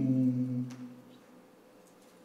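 A man humming a steady, closed-mouth "mmm" that lasts about a second and then fades out.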